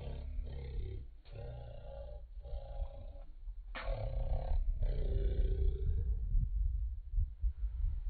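A man yelling in a run of drawn-out shouts, each about a second long, with wind rumbling on the microphone, the rumble louder in the second half.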